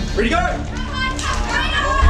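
Several people shouting and yelling excitedly over one another, high-pitched and overlapping: spectators urging on two armwrestlers during a bout.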